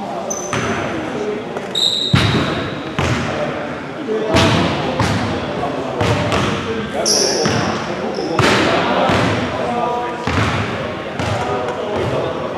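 Basketballs bouncing on a gym floor, roughly one bounce a second at an uneven pace, each one echoing around the hall. Sneakers squeak briefly a few times.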